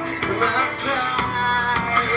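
Live rock band playing at steady full volume, with a drum kit and amplified electric guitar.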